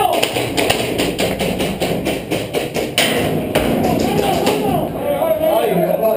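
A quick run of sharp taps, about five a second, for the first three seconds, then a short burst of hiss about three seconds in.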